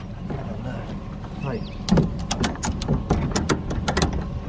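A ratchet tie-down strap being cranked tight over a stack of vinyl soffit panels: a quick run of sharp clicks, about six a second, in the second half, over a steady low hum.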